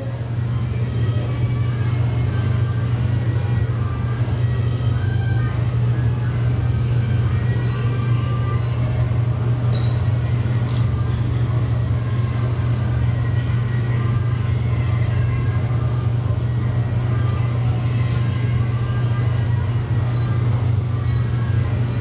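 A steady low hum that holds unchanged throughout, with a faint busy haze of indistinct sound above it.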